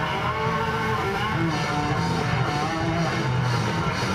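Live blues-rock band playing loud and steady: electric guitar over bass and drums.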